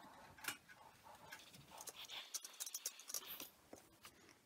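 Faint, scattered light clicks and taps from a steam iron being handled and slid over folded cotton fabric on an ironing board.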